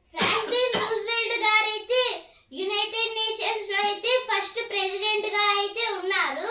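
A child singing two sustained phrases in a high voice, with a short break about two and a half seconds in.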